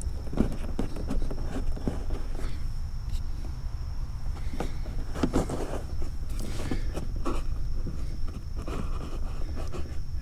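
Hands pushing a dash cam power cable into the gap along a car's headliner trim: soft rustling of cable against fabric and plastic with scattered small clicks and taps.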